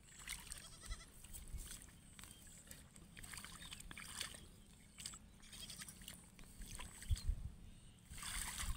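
Faint splashing and rustling as weeds are pulled by hand from a flooded rice paddy, in short irregular bursts. A few low thumps come near the end.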